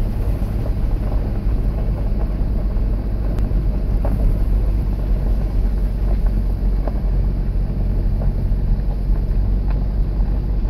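Steady low rumble of a vehicle running, heard from inside it, with a few faint ticks scattered through.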